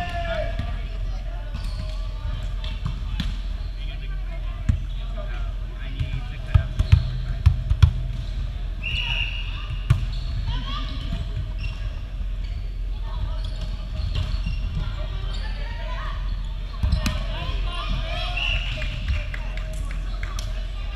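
Volleyball rally in a large gym hall: a volleyball struck by hands and arms with sharp hits, several in quick succession about six to eight seconds in and another near ten seconds. Players' shouts and general hall chatter sit over a steady hum, with a few short high squeaks.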